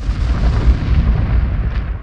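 A loud, deep rumbling sound effect that swells in quickly from silence and eases off near the end.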